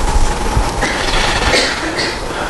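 Marker pen writing on a whiteboard: a run of quick scratchy strokes and taps, with short squeaks from the tip.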